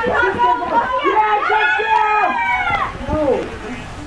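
Teenagers' voices talking and calling out excitedly over one another, with one long drawn-out call in the middle.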